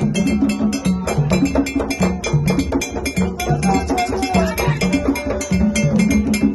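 Live hand drums played in a fast, steady rhythm, low booming strokes changing pitch, with a struck metal bell ringing sharply on top.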